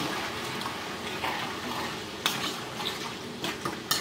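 A metal spoon stirring sauce in a stainless steel frying pan, clinking against the pan a few times in the second half, over the steady sizzle of the hot sauce.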